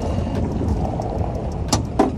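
A steady low rumble, then a single sharp click near the end as the hood's safety catch on a Mercedes-Benz GLC 250 is released and the hood is lifted.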